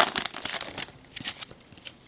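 Foil wrapper of an Upper Deck hockey card pack being torn open and crinkled by hand, busy crackling that dies down after about a second, followed by a few faint ticks as the cards are handled.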